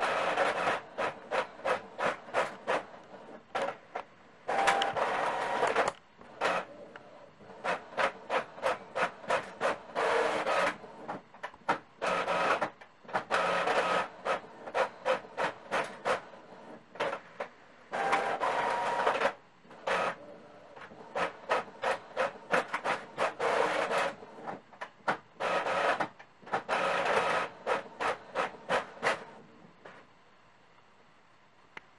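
Epson EcoTank ET-M2140 monochrome inkjet printer running a two-sided (duplex) print job. Short rhythmic pulses about two a second from the print head passing back and forth alternate with longer stretches of paper-feed running, and it stops just before the end.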